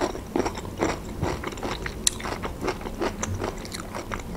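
Close-up crunching and chewing of a pickled gherkin: a quick, irregular run of crisp crunches.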